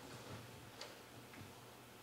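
Near silence in a hall, with a couple of faint ticks a little under a second in and again about half a second later.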